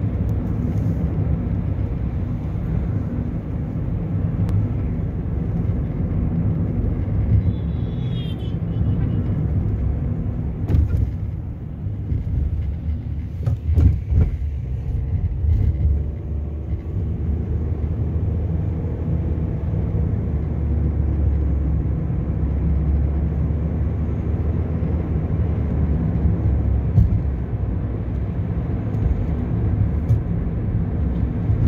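Steady low rumble of a car being driven, heard from inside: engine and road noise, with a couple of short knocks about halfway through.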